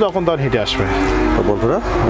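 A cow mooing: one long, low moo.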